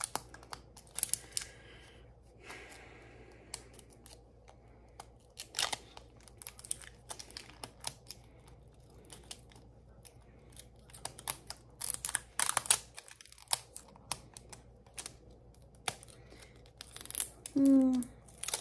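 Plastic wrapping and stickers being peeled and torn off a plastic surprise ball by hand: scattered crackles and sharp clicks, busiest about two-thirds of the way through and again near the end.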